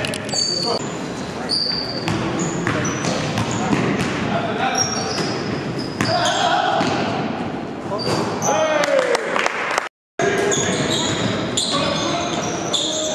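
Live basketball game sound in an echoing gym: a basketball bouncing on the court, sneakers squeaking in short high chirps and indistinct player shouts. The sound cuts out for a moment near the end.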